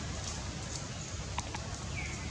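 Steady outdoor background noise with a low rumble, and two short sharp clicks close together about a second and a half in.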